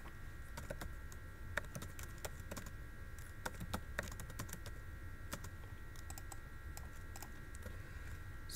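Computer keyboard typing: scattered, irregular key clicks, faint, over a steady low hum.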